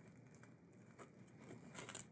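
Plastic wrap crinkling faintly as it is pulled and pressed around a glued guitar side by gloved hands. It starts about a second in and grows a little louder near the end.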